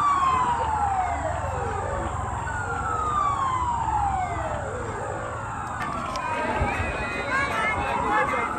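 A siren wailing in slow sweeps, each falling in pitch over about two and a half seconds, twice, then rising again near the end. Voices come in over it near the end.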